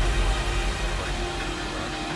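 A quiet, noisy stretch of the soundtrack: an even hiss with a low rumble under a faint held note.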